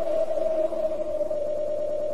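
A single held musical tone with a faint hiss beneath it, the sustained closing note of the channel's intro jingle under the logo animation.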